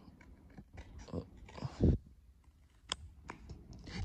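Scissors cutting through a thin cardboard packaging card: a series of soft snips and crunches, with a couple of louder knocks in the first two seconds and a sharp click about three seconds in.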